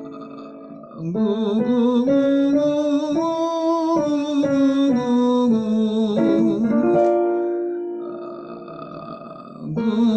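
A man's voice singing a vocal warm-up exercise with piano. The notes step up a scale from about a second in and back down, then settle on one long held note that fades away, and a new run begins just before the end.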